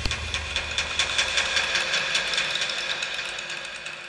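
Rapid ticking sound effect from a TV channel's intro jingle, about nine ticks a second over a low drone, slowly fading away.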